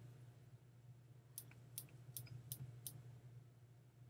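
A clear acrylic stamp block tapped onto an ink pad to ink the stamp: five or six light clicks a little under half a second apart, over a faint steady hum.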